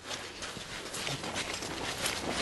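A quick, irregular patter of light knocks over a soft noisy background, slowly growing louder.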